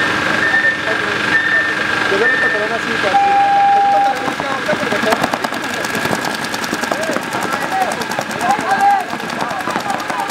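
Paintball markers firing in fast strings of shots, a rapid even patter, over shouting voices. A held tone sounds for about a second, about three seconds in.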